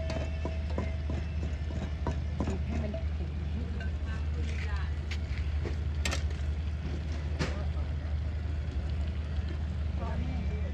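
Gas burner fed from an LPG cylinder running under a cooking pot: a steady low rumble, with a few scattered clicks and knocks over it.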